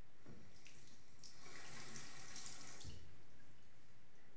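Bathroom tap running briefly into a sink for about two seconds, starting a little after a second in, then stopping, with a short low knock near the end.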